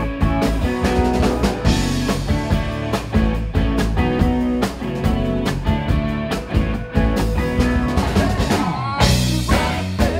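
Rock band playing an up-tempo number on electric guitars, bass and drum kit, with steady drum hits throughout.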